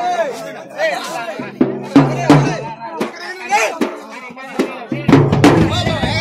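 A festival crowd shouting and whooping over drumming and music, with sharp drum strokes around two and five seconds in and a deep bass coming in with them.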